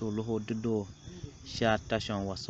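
A voice speaking continuously, with a faint steady high-pitched tone running underneath.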